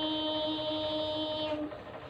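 A woman's voice chanting Qur'anic recitation, holding one long, steady note on a drawn-out vowel that ends about three-quarters of the way through.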